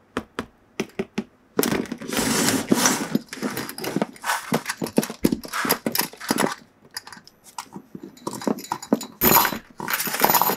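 Steel chain wrapped around a cardboard box clinking and rattling as hands grab and tug at it and its padlock. A few separate taps come first, then almost continuous jangling and handling noise from about a second and a half in.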